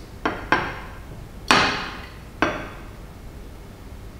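Four sharp glass clinks with short ringing tails, the third loudest: a glass conical flask knocking against the burette tip and white tile as it is swirled during dropwise titration.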